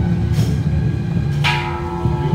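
Struck metal percussion ringing out about once a second, a lighter strike near the start and a loud, ringing one past the middle, over a steady low hum.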